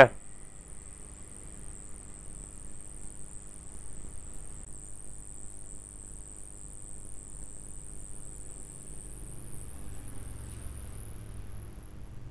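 Faint steady background hum with a thin high-pitched whine, the whine gliding upward in pitch about nine seconds in.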